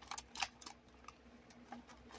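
Faint light clicks and rustling of paper bills being slipped between the plastic tab dividers of an expanding file folder, a quick run of clicks in the first half-second, then only an occasional one.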